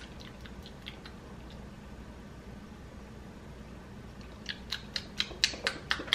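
Mouth smacks and chewing while tasting a freshly blended blackberry drink with seeds and pulp in it. A few faint clicks near the start, then a fast run of sharper smacks, about four a second and growing louder, over the last second and a half.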